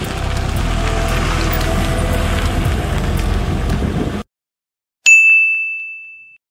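Background music that cuts off suddenly about four seconds in. After a short silence, a single bright ding rings out and fades: a logo chime.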